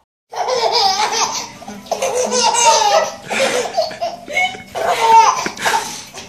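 A toddler laughing hard, in several long belly-laugh bursts, starting about a third of a second in.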